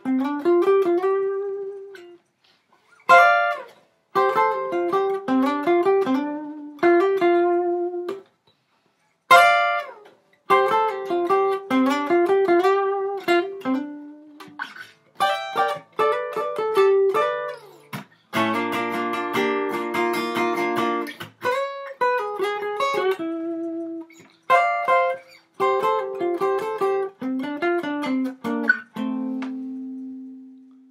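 Acoustic guitar playing a single-note lead solo in short phrases, sliding a finger up to notes in place of string bends. The phrases are broken by brief pauses, there is a stretch of fuller chords about two-thirds of the way through, and a held note rings out near the end.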